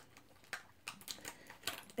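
Faint, irregular light clicks and taps of makeup tools and containers being handled on a tabletop, as a brush is picked up.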